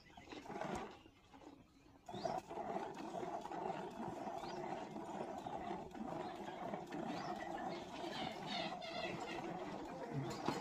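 A buffalo being milked by hand: jets of milk squirting into a plastic bucket in a steady, rapid, frothy stream that starts about two seconds in.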